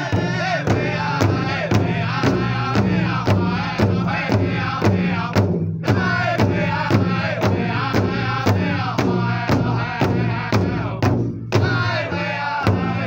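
Powwow drum and singers: a large drum struck in a steady beat, about two beats a second, with several voices chanting over it. The singing breaks off briefly twice.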